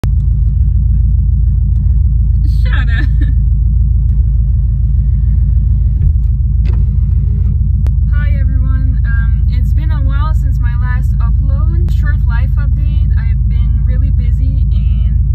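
Subaru boxer engine idling, heard from inside the cabin as a loud, steady low rumble.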